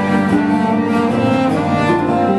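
A band playing an instrumental passage without singing: held, sustained notes that change every half second or so.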